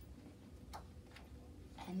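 Page of a hardcover picture book being turned by hand, heard as two faint papery clicks about half a second apart.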